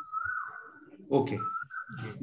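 A thin, high whistling tone, nearly steady in pitch, heard in two stretches, with a man saying "okay" between them.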